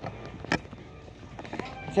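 Quiet shop ambience with faint background music and one sharp click about half a second in.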